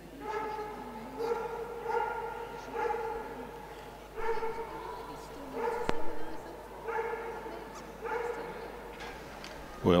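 A dog yelping repeatedly, about eight short steady-pitched yelps roughly a second apart.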